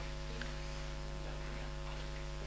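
Steady low electrical mains hum with a row of fainter buzzing overtones, unchanging throughout, with one faint tick about half a second in.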